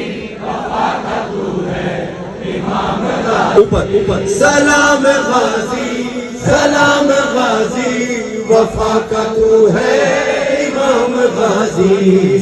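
A group of men chanting a Shia devotional salaam (noha) together, live over a crowd. A brief thump comes about three and a half seconds in, and after it the chanting turns clearer and more sustained and tuneful.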